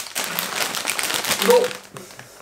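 Crinkly plastic snack bag rustling as it is held up and turned in the hands; the rustling fades about a second and a half in.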